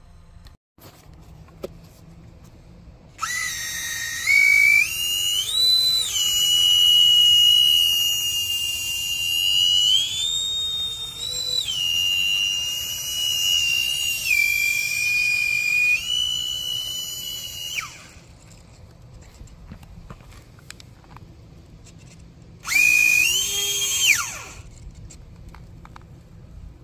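Twin 30 mm electric ducted fans of an E-flite UMX A-10 Thunderbolt II RC jet whining, the pitch stepping up and down as the throttle is moved. They cut off about 18 seconds in, then spool up again briefly and wind down near the end.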